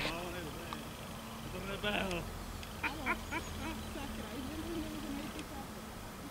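Faint, indistinct voices over a low steady hum.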